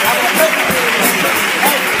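Audience applauding and cheering, a dense spread of clapping with scattered shouting voices.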